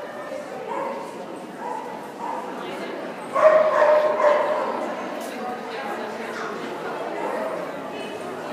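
A dog yipping and barking as it runs an agility course. A louder, drawn-out cry comes about three and a half seconds in.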